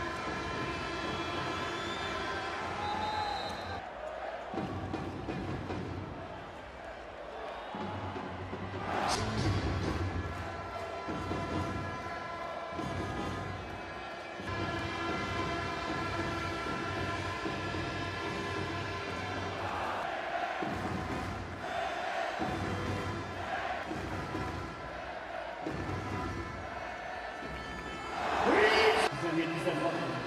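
Background music laid over handball arena crowd noise. The crowd surges loudly about nine seconds in and again, most loudly, near the end.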